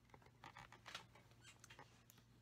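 Faint, scattered light ticks and scratching of a paper trimmer's cutting blade being slid along its track through cardstock.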